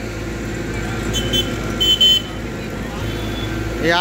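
Street traffic under a steady low engine hum, with a vehicle horn sounding two short high beeps, about a second in and again about two seconds in.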